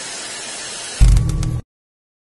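Television static hiss, a sound effect, then a loud deep low hit about a second in that cuts off half a second later.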